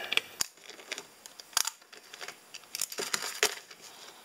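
Plastic clicks and taps of a digital multimeter's back cover being fitted onto the meter and handled, a few separate sharp clicks spread through.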